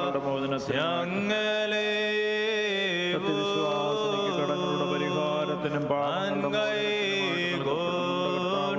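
Voices chanting an Orthodox liturgical hymn in long held notes, over a steady low accompanying tone.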